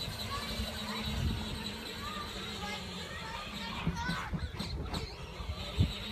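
Children's voices calling out in the distance, no words made out, over a low steady hum and a low rumble.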